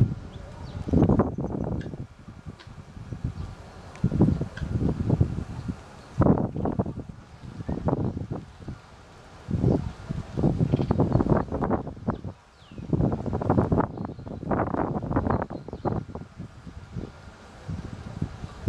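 Wind buffeting the camera microphone in irregular gusts of low rumble that come and go every second or two.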